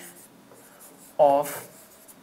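Marker pen rubbing faintly on a writing board as letters are written, with a single spoken word about a second in.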